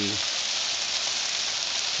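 Eggplant and onions frying in hot oil in a wok, a steady sizzle.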